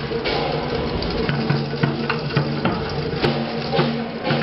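Temple procession music: drums and other percussion struck in a steady rhythm over held low notes.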